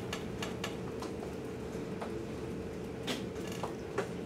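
Chalk tapping and scraping on a chalkboard as a graph is drawn: a series of short sharp ticks, bunched in the first second and again about three seconds in.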